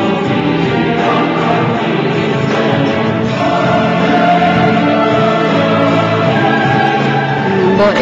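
Background music: a choir singing long held notes.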